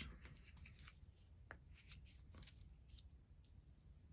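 Faint rustle and light taps of playing cards being picked up and slid onto a tabletop, with a couple of small clicks.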